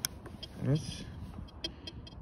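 A few short, sharp clicks of buttons on a Tianxun TX-850 metal detector's control box being pressed during ground balancing, over a low steady background rumble.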